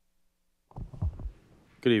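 A few low thumps and rumble from a desk microphone being handled as it comes live, followed near the end by a man starting to speak.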